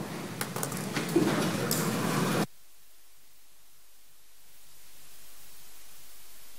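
Rustling and several sharp clicks of a microphone being handled. About two and a half seconds in these cut off abruptly to a steady hiss, which grows a little louder near the end.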